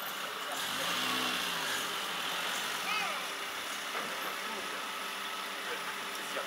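A motor vehicle passing close by, its engine note swelling and then falling away about a second in, over steady outdoor background noise.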